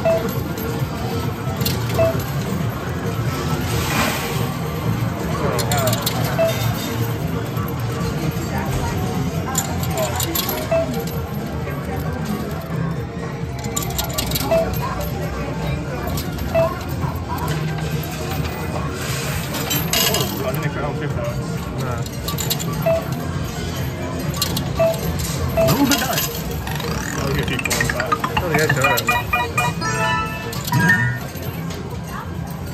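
2p coins clinking and rattling as they drop into a coin pusher and land on the coin-covered playfield, again and again, over a steady arcade background of music and voices.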